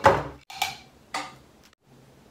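A glass jar and a metal spoon handled at a table: a thump at the start, then two light clinks about half a second apart, as sauce is spooned from the jar.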